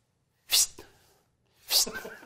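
Two short, sharp sneezes about a second apart, sounded as a gag while the handkerchief is held up.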